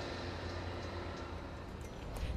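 Faint, steady low rumble of distant street traffic.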